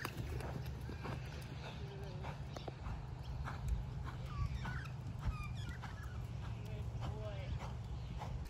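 A thoroughbred horse cantering on a sand arena, its hoofbeats soft and rhythmic over a steady low rumble.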